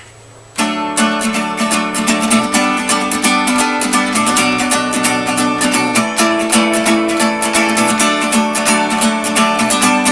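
Acoustic guitar starting suddenly about half a second in and then strummed in a steady, even rhythm as the instrumental intro of a song, with no singing.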